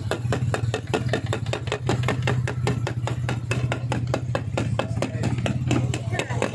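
A small engine running steadily at idle: a low hum with a regular ticking of about six beats a second.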